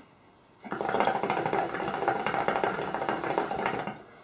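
Shisha water bubbling in the base as smoke is drawn through the hose: a steady, rapid gurgle that starts just under a second in and stops shortly before the end.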